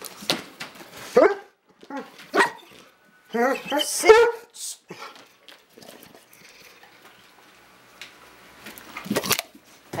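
A large brindle dog making short, wavering vocal sounds: dog 'talking' to beg for treats. There is a sharper, louder bark just after nine seconds.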